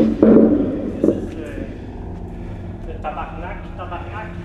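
Men talking indistinctly: a loud burst of voice at the start and quieter talk near the end, over a low steady background.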